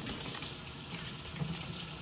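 Kitchen tap running into a stainless steel sink as hands are washed under it: a steady rush of water.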